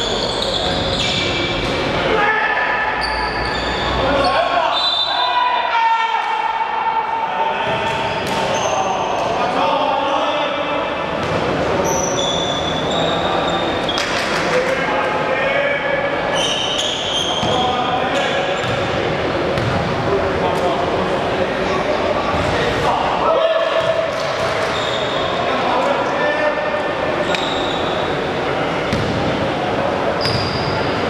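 A basketball bouncing on a wooden gym floor and sneakers squeaking on the court during play, with players' voices, all echoing in a large hall.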